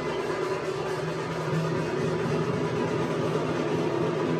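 A steady low droning hum with no beat.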